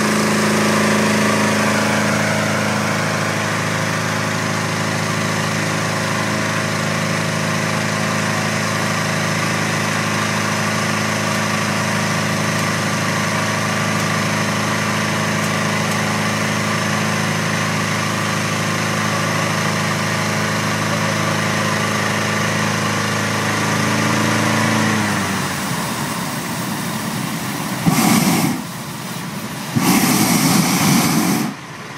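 Small engine of a balloon inflator fan running steadily at a constant pitch, blowing cold air into the hot-air balloon envelope. About 25 seconds in the fan's note drops away. Near the end the propane burner fires a short blast, then fires again, the start of hot inflation.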